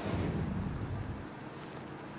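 A TV news graphics transition whoosh with a low rumble, swelling at once and fading over about a second and a half. It is followed by faint steady wind and rain noise on an outdoor microphone.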